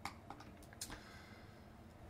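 A handful of faint computer keyboard and mouse clicks in the first second.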